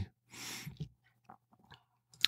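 A man's short, soft breath between phrases, then a few faint mouth clicks, with near silence for the rest.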